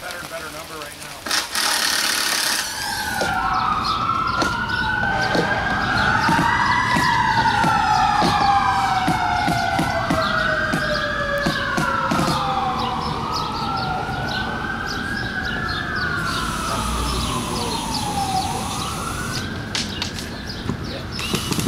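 Several sirens wailing at once, their tones rising and falling in slow overlapping sweeps. The wails begin a couple of seconds in and fade just before the end.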